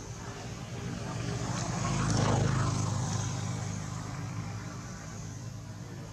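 A passing motor vehicle's engine, swelling to its loudest a couple of seconds in and then fading away.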